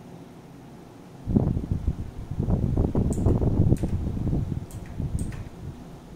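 Colored pencil scribbling quickly back and forth on paper on a desk: a dull rubbing noise of rapid strokes that starts about a second in and eases off near the end, with a few light ticks.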